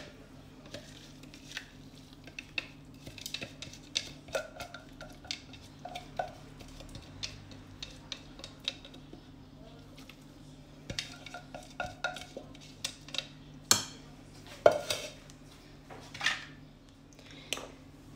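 Silicone spatula scraping and tapping against a glass mixing bowl and a chopper bowl as chopped peppers are scraped into minced meat: scattered light clicks and knocks, with a couple of sharper knocks about three-quarters of the way through. A faint steady hum runs underneath.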